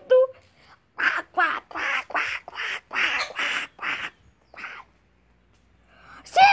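A run of about ten short, raspy, duck-like quacking squawks, one after another, from the cartoon roast bird.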